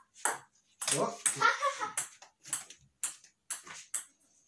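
Table tennis ball clicking back and forth between rubber paddles and a wooden dining table in a slow rally, with sharp hits about every half second.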